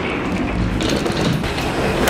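Wheels of a rolling carry-on suitcase rumbling and rattling steadily over a jet bridge floor, with a few sharp clicks about a second in.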